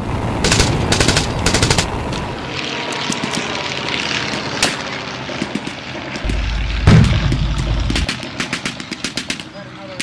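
Re-enacted battle sounds. Rattling machine-gun bursts play over the drone of a WWI aircraft engine, and a heavy boom comes about seven seconds in. More bursts of gunfire follow near the end.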